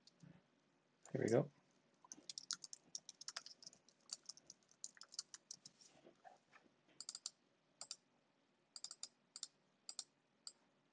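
Computer keyboard typing: quick, irregular key clicks from about two seconds in as a command is typed at a terminal. About a second in comes one brief, louder vocal sound from the typist.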